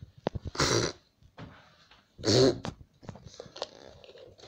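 Two short, rough vocal noises about a second and a half apart, with a few light clicks between them.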